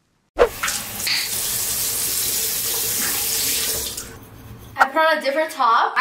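Bathroom sink faucet running into the basin: the water starts suddenly just after the start, runs steadily and loudly, and stops about four seconds in.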